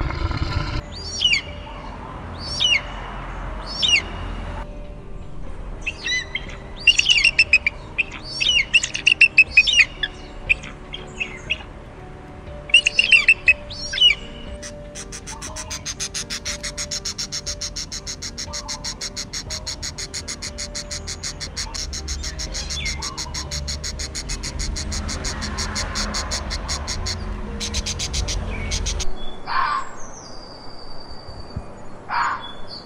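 Bird calls: a few high, descending screams one after another, then louder clusters of shrill calls, giving way in the second half to a fast, even rattle of very rapid high pulses. Soft piano music plays underneath.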